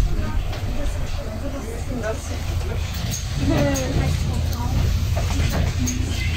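Inside a city bus: a steady low engine rumble with indistinct passenger chatter over it.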